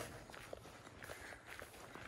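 Faint footsteps of a hiker walking on a pine-needle-covered forest trail, a soft crunch with each step.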